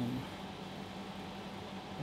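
Steady room tone: an even hiss with a faint low hum underneath, and no distinct event.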